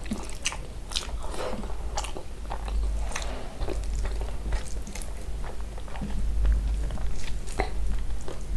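A person chewing and biting food close to the microphone, with many short mouth clicks and smacks spread through the whole stretch.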